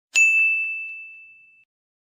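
A single bright, bell-like ding sounds just after the start as a logo chime, ringing out and fading away over about a second and a half. Two faint taps follow it.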